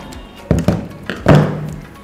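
Three thunks of a plastic laser-printer toner cartridge being handled and set down on a wooden table, the last about a second in and the loudest, over background music.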